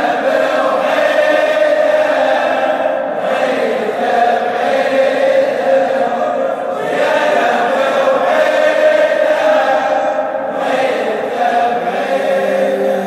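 A large group of men chanting a Shia mourning lament (latmiya) refrain in unison. It comes in long phrases with short breaks about three, seven and ten and a half seconds in.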